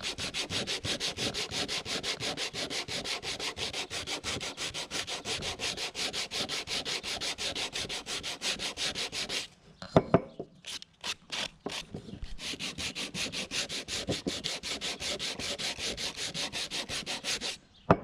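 Sandpaper rubbed by hand along the grain of an old, weathered cedar board in quick, even back-and-forth strokes, wearing through a dried color wash to distress it. The sanding stops about halfway for a couple of sharp knocks, then carries on, and a single knock comes at the end.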